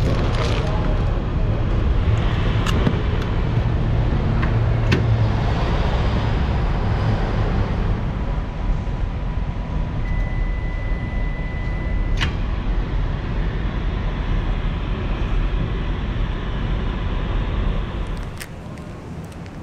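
Commercial microwave oven heating with a steady hum. About ten seconds in, a steady beep sounds for about two seconds and cuts off with a sharp click.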